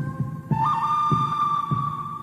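One-man-band music: a low kick-drum thump about twice a second keeps a steady beat, and a held high melody note comes in about half a second in, with banjo.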